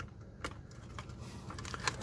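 A few light clicks and taps from hands handling a circuit board and its connectors, the clearest about half a second in.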